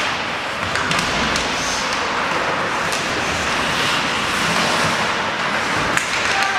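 Ice hockey play along the boards: steady arena noise of skates and crowd, with a few sharp knocks of sticks, puck and bodies hitting the boards, the loudest at the start and at the end.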